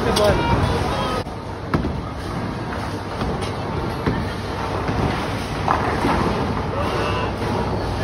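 Bowling alley din: the steady rumble of balls rolling down the lanes, with voices in the background and a single sharp knock a little under two seconds in.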